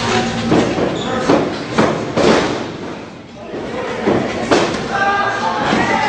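Wrestlers' bodies hitting the ring mat: a series of sharp thuds and slams, about five in the first two and a half seconds and two more around four seconds in, with voices underneath.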